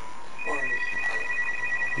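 Electronic telephone ringing: a fast trill of two high tones pulsing about ten times a second, starting about half a second in.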